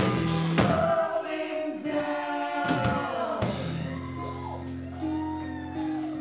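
Live band with a singing voice: drum hits in the first second, then the band settles into held chords under a sustained, bending sung line.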